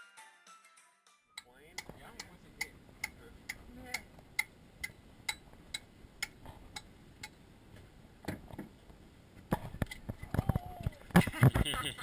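A hand tool tapping on a conch shell, about two even, sharp knocks a second for several seconds, knocking into the shell to free the conch. Near the end the knocks come louder and more irregular, with voices.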